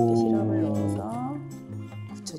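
A voice drawing out the end of a word, fading about a second in, over steady background music.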